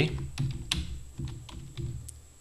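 Computer keyboard being typed on: a quick run of separate key clicks as a short command is entered.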